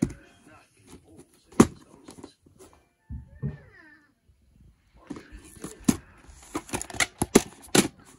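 Plastic VHS clamshell case being handled and snapped open, giving sharp clicks and knocks: one about a second and a half in, then a quick run of them in the second half as the cassette is taken out.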